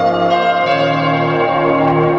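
Background music of sustained ringing tones layered over one another, with new notes coming in a few times.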